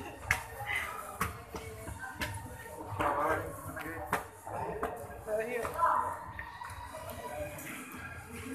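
Indistinct voices and background music in a venue, with scattered sharp knocks and clicks.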